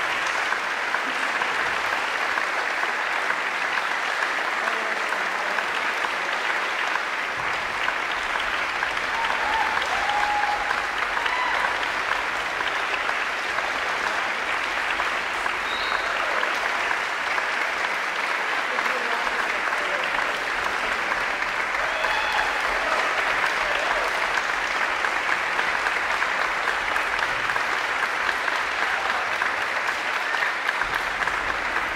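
Audience applauding steadily after a concert.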